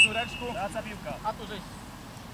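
Referee's whistle: a short blast that starts in a quick trill and then holds one high steady note, dying away about a second in, with voices calling on the pitch.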